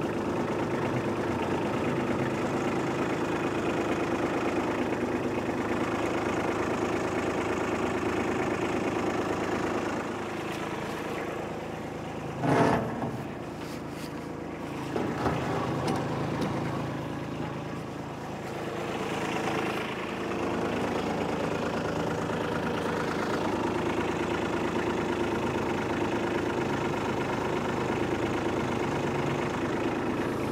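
Kubota B2601 compact tractor's three-cylinder diesel engine idling steadily. It is quieter for several seconds in the middle, with a short sharp clank about twelve seconds in.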